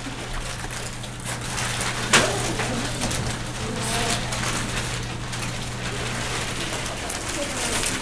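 Classroom of students opening and sorting packets of peanut M&M's: a faint murmur of voices with rustling and small clicks of candy on desks, over a steady low hum that stops near the end. One sharp tap about two seconds in.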